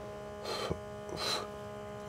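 Steady low electrical hum, with two brief soft hissing sounds about half a second and a second and a quarter in.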